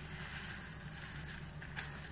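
Faint handling noise of a plastic diamond-painting tray and loose resin drills, with a brief light rattle or hiss about half a second in and a smaller one near the end, over a low steady room hum.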